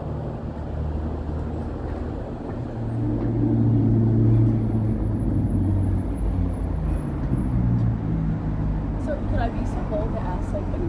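Street traffic: a road vehicle's low engine hum swells about three seconds in and fades again by about eight seconds as it goes by.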